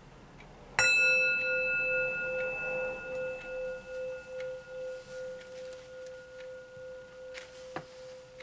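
A metal singing bowl struck once with a wooden mallet, then ringing: one steady tone with fainter higher overtones that pulses about twice a second and slowly fades. A small knock comes near the end.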